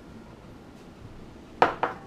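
Quiet room tone, then two quick clinks of kitchenware about a quarter second apart near the end, as the emptied glass bowl is set down by the stainless steel mixing bowl.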